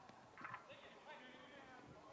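Faint, distant shouts of players on an open football pitch, with a single soft knock about half a second in.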